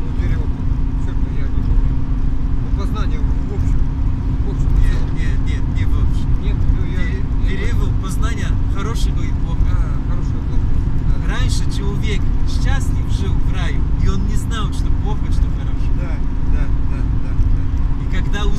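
Steady engine and road rumble inside the cabin of a moving passenger van, with a constant low hum beneath a man's talking.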